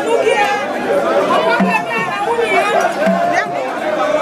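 A large crowd of many voices chattering and calling out at once, with no single speaker standing out.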